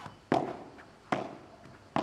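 Padel ball being struck during a rally: three sharp hits about 0.8 s apart, each with a short ringing decay.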